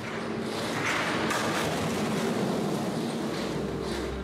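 Full-scale earthquake shake table shaking mock masonry houses: a continuous rumbling, rattling noise that swells about a second in as a brick wall breaks apart and falls to rubble.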